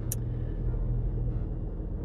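Steady low rumble and hum of a car, heard from inside the cabin.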